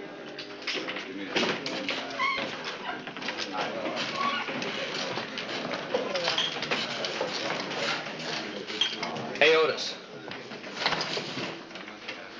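Indistinct murmur of many voices, with scattered knocks.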